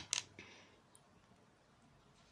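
Three quick plastic clicks from handling a small tube of face cream, the loudest right at the start and the last a little under half a second in, then faint room tone.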